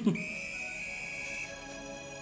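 One long, steady blast on a coach's whistle, lasting a little over a second and stopping abruptly, over film background music.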